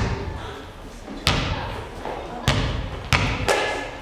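A basketball bounced on a stage floor: about five thuds at uneven intervals, each with a short echo in the hall.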